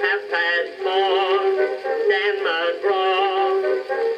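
Edison Blue Amberol cylinder playing on an Edison cabinet phonograph: an acoustic-era recording of a male singer with band accompaniment, thin and narrow in range with no bass.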